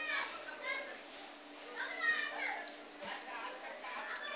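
Children's high-pitched voices chattering and calling out in the background, with no clear words, loudest right at the start and again about two seconds in.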